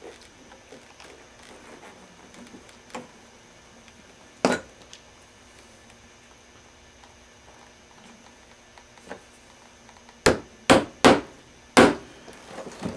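Hammer tapping tacks into a saddle to fasten the leather saddle strings: a single knock about four and a half seconds in, then four sharp strikes in quick succession near the end.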